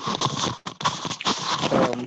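Rustling and knocking on a video-call participant's just-opened microphone, cutting in suddenly out of silence and running loud and cluttered, with a brief voice-like sound near the end.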